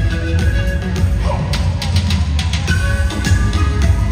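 A live band playing an instrumental: a held, flute-like lead melody with a brief sliding note about a second in, over keyboards, electric guitar, heavy bass and drum kit.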